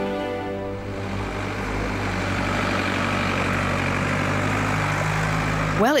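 Music fading out in the first second, then a four-wheel-drive truck running steadily as it drives up a dirt mountain track.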